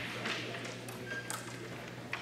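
Quiet hall room tone with a low murmur of distant voices and a couple of faint light clicks about a second in.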